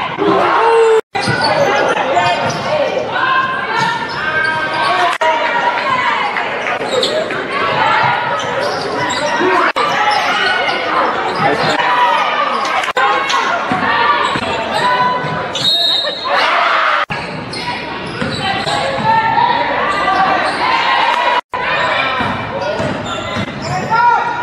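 Basketball game sound in a school gymnasium: many crowd voices calling and shouting over a ball bouncing on the hardwood, all echoing in the hall. The sound cuts out for a moment three times as one game clip gives way to the next.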